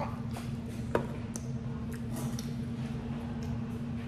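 Someone chewing a crunchy toaster waffle: scattered small crunches and mouth clicks, a sharper click about a second in, over a steady low hum.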